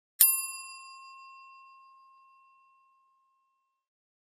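A single bell-like ding sound effect from a notification bell animation, struck once and ringing out over about two and a half seconds.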